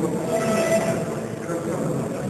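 Indistinct chatter of many voices at once in a crowded room, steady throughout, with one held voice-like tone about half a second in.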